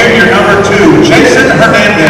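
A man's voice over a gymnasium public-address system, echoing through the hall, as at pregame team introductions.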